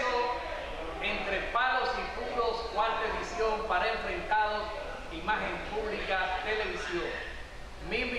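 A man speaking Spanish to the camera.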